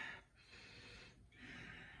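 Two faint sniffs through the nose, one after the other, as the freshly poured coffee is smelled for its aroma.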